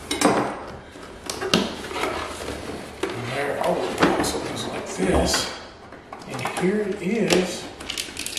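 A cardboard product box being opened by hand: flaps pulled apart and folded back, cardboard scraping and rustling, with several sharp knocks and clicks as it is handled on a wooden table. A man's voice mutters briefly in the second half.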